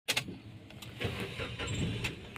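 Car engine running, heard from inside the cabin, with two sharp clicks right at the start and the rumble growing louder from about a second in.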